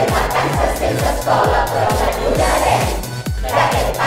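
A song with a steady kick-drum beat, about two beats a second, and a group of voices singing loudly in Catalan.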